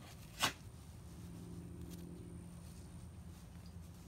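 A used Swiffer dry cloth being unfolded and smoothed flat by hand, giving a faint rustle, with one sharp click about half a second in over a faint low hum.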